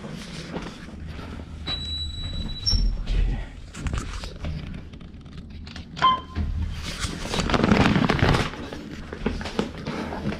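Hospital elevator sounds: a steady electronic beep lasting about a second, then a short higher tone and a low thud about three seconds in. Around six seconds a button click gives a short beep, and a louder rush of noise follows near eight seconds.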